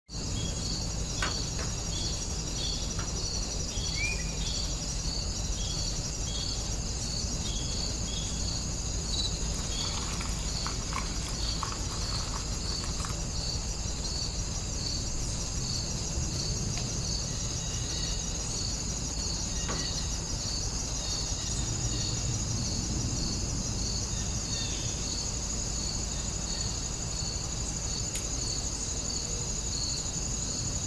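Insects chirping in a steady chorus: regular chirps about two a second over a continuous high trill, with a low hum beneath.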